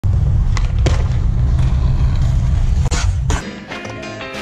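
Skateboard wheels rolling on concrete: a loud, steady low rumble with a few sharp clicks, and a couple of harder knocks about three seconds in. About three and a half seconds in the rolling cuts off and music begins.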